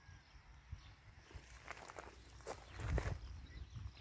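Footsteps of a person walking over dry grass and loose dug soil: a few irregular steps, the loudest about three seconds in.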